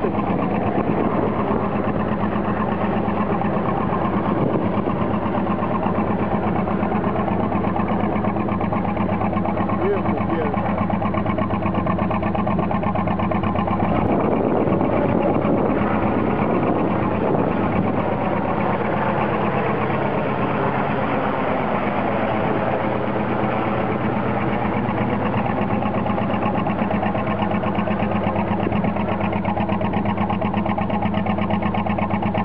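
A narrowboat's diesel engine running steadily under way, a constant low drone with a fast, even beat.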